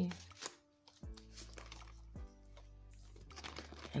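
Quiet background music with a few sustained plucked notes, and brief rustling of paper banknotes being handled near the start.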